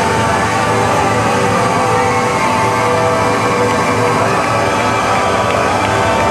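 Loud live electric bass music over a PA, recorded from the audience: a dense wash of sustained tones, some sliding slowly in pitch.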